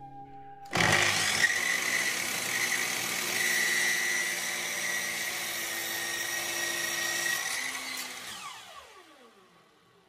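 A power tool is switched on with a sudden start and runs steadily with a whine for about seven seconds. It is then switched off, and its motor winds down with a falling whine as it coasts to a stop.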